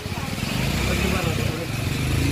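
A motor vehicle engine, likely a motorcycle, running steadily nearby, with people's voices in the background.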